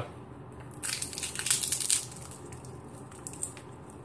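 A thick, hollow, double-walled homemade potato chip crackling crisply as it is crushed and broken apart by hand. The burst of crunching comes about a second in and lasts about a second, with a few faint crackles after it.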